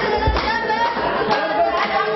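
Voices singing unaccompanied, with a few sharp hand claps.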